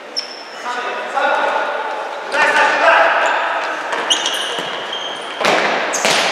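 Futsal game sounds in a reverberant sports hall: players shouting, short high sneaker squeaks on the wooden floor, and the ball thudding off feet, with a sharp kick about five and a half seconds in.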